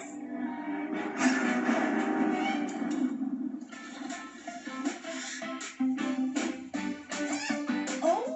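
Cartoon background music led by a strummed guitar, played through a television's speaker.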